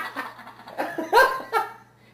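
A man laughing in short bursts, the loudest a little over a second in.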